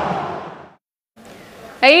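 A steady rushing noise fades out over the first second, then there is a moment of silence before a woman's voice starts near the end.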